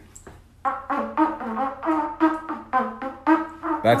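Trumpet playing the national anthem: a string of separate held notes that begins about half a second in.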